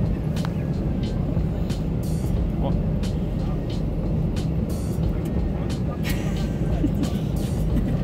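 Steady low rumble of engine and airflow noise inside an airliner cabin.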